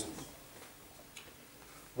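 Quiet room tone in a lecture room, with one faint tick a little over a second in.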